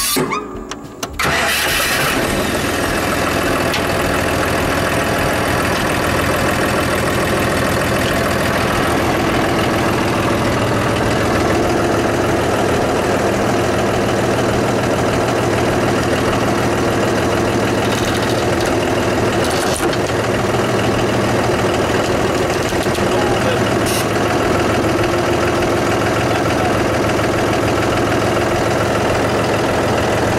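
A vehicle engine starts up about a second in and then runs steadily at an even speed.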